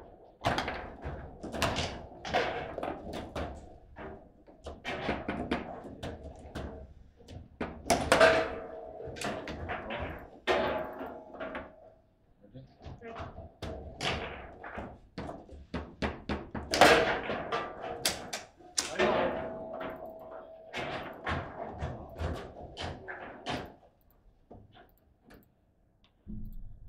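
Table football in fast play: rapid irregular clacks and thunks of the hard ball against the plastic figures and the table walls, and of the metal rods clunking as they are spun and slammed. The loudest hits come about eight and seventeen seconds in, and it goes briefly quiet around twelve seconds and again near the end.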